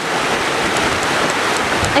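Creek water rushing steadily, a constant wash of noise.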